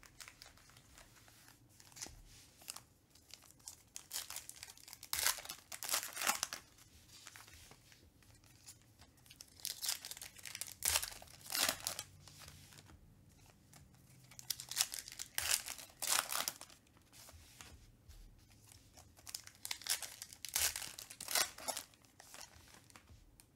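Foil trading-card pack wrappers torn open and crinkled by hand, in four bursts of tearing and rustling a few seconds apart.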